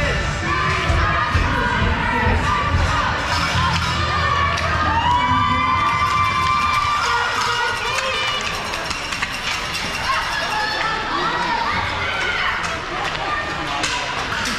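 Crowd of children shouting and cheering, many high voices overlapping throughout.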